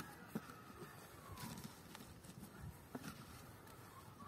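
Faint, scattered soft clicks and rustles of hands working soil in black plastic nursery bags.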